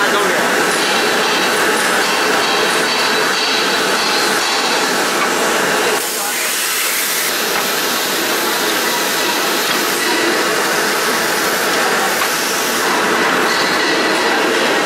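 CDH-210F-2 handkerchief tissue paper machine line running: a loud, steady mechanical noise from the folding, cutting and conveying units, dipping slightly for a moment about halfway through.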